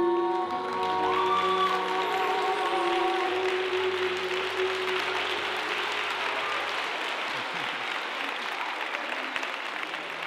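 Applause from a crowd rising about a second in, as background music with singing fades out over the next few seconds. The clapping then carries on alone, slowly thinning.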